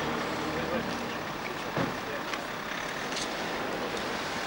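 Street ambience: a vehicle engine running under the murmur of a crowd talking, with a brief knock about two seconds in.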